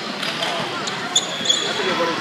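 A basketball being dribbled on a hardwood gym court, with sneakers squeaking twice in quick succession a little past a second in, over spectators' chatter echoing in the hall.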